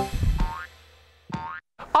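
Animated logo sting for a children's TV show: the jingle's music dies away in the first half second, then a quick upward-sliding cartoon boing effect sounds about a second and a half in and cuts off abruptly.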